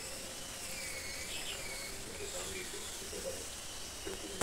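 Birds calling in the background, their chirps gliding up and down in pitch, over steady outdoor ambience.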